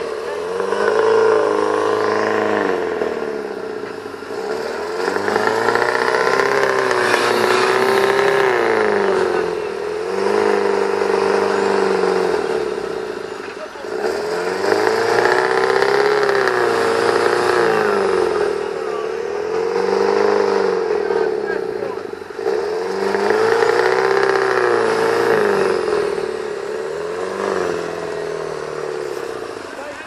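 Off-road 4x4 engine revved hard and eased off again and again, about six long surges each a few seconds apart.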